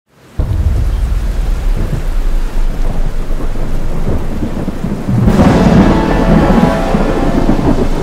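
Thunderstorm: steady rain with rumbling thunder that comes in abruptly just after the start, and a louder thunderclap about five seconds in.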